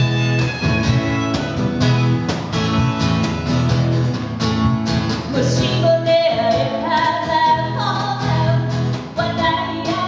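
Live acoustic duo: strummed acoustic guitar over a steady cajon beat. About halfway through, a woman's singing voice comes in over them.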